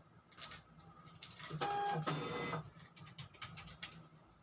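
A small motorised machine whirrs briefly in two short runs about a second and a half in, each run holding a steady hum at a different pitch. Faint light clicks and ticks are heard around it.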